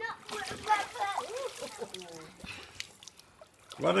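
Swimming-pool water splashing and sloshing as people move about in it, with voices calling over it in the first two seconds.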